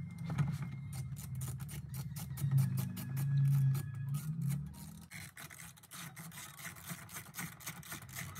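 Quick run of small metallic clicks from a ratchet wrench tightening the 10 mm bolts that hold the airbag in the back of the steering wheel, over a low hum that fades out about halfway through.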